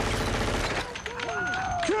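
A rapid burst of rifle fire at a thrown clay target, cutting off a little under a second in.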